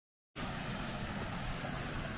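After a brief silence, steady outdoor noise starts about a third of a second in: wind buffeting the microphone over the rushing of a small beck running over rocks.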